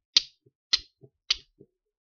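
A hand-forged fire steel struck against a piece of chert, three sharp scraping strikes about half a second apart, throwing sparks to light denim char cloth.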